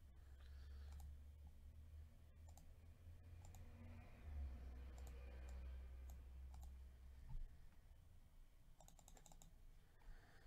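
Near silence: faint computer mouse clicks, scattered and then several close together near the end, over a low hum that fades out late on.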